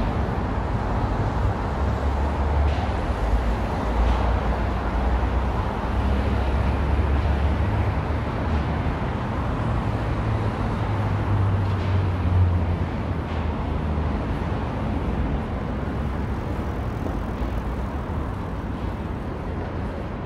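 City road traffic on a multi-lane avenue: a steady rumble of passing cars' engines and tyres, heaviest in the first half and easing slightly toward the end.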